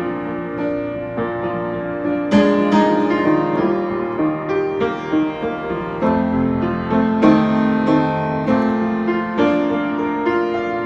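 Hallet, Davis & Co UP121S studio upright piano, freshly tuned, played in full chords that ring on under the sustain, with a new chord struck every second or so.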